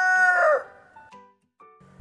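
A rooster crowing: the tail of one long, held crow that falls away about half a second in, followed by near quiet.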